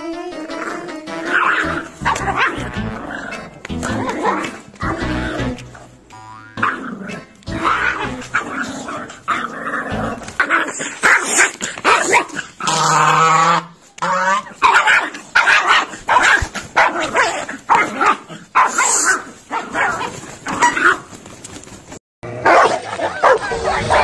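Puppy barking and growling while tussling with a goose, over background music.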